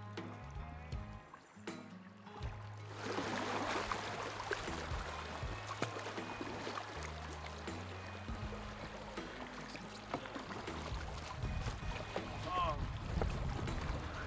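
Background music with low sustained bass notes, joined about three seconds in by the steady rush of moving river water around an oar-rowed inflatable raft. A short voice sound comes near the end.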